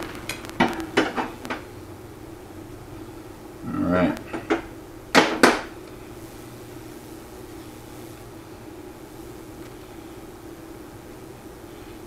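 Metal handling and tool sounds at a metal lathe: a few light clicks in the first second and a half, a duller knock about four seconds in, then two sharp metallic clicks close together just after five seconds, the loudest sounds. A steady low hum sits underneath throughout.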